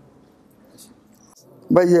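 A pause in a man's lecture with only faint, even background noise, then the man starts speaking again into a microphone near the end.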